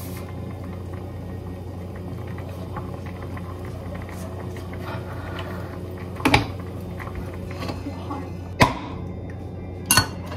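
Wooden chopsticks knocking against a metal cooking pot: three sharp clicks, about six, eight and a half and ten seconds in, over a steady low hum.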